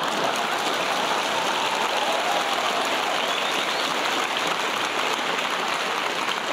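Large theatre audience applauding, dense clapping at a steady level.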